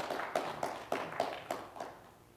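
Audience applause: a small group clapping irregularly, dying away near the end.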